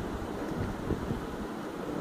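Steady background room noise with no speech: an even hiss with a low rumble underneath.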